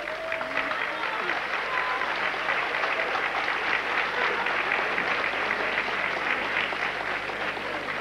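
Audience applauding steadily, a dense even patter of many hands clapping.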